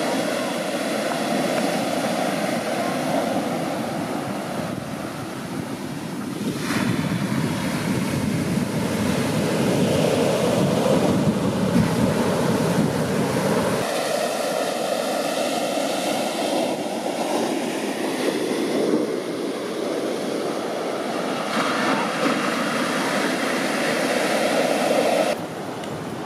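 Large ocean waves breaking and rushing ashore, with wind on the microphone. The sound changes abruptly about halfway through, losing its deep rumble, and drops in level shortly before the end.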